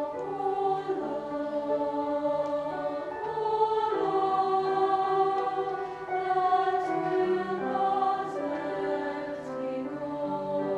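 A women's choir singing in several parts, holding sustained chords that shift to new harmonies every second or so, with a few soft 's' consonants in the second half.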